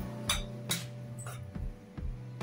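A spoon clinking lightly against a plate a few times as food is spooned onto it.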